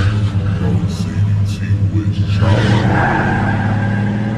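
A car engine running with a deep, steady drone. Its noise swells and roughens about two and a half seconds in, as if the car is pulling away. The sound is slowed down and lowered in pitch in the chopped-and-screwed style.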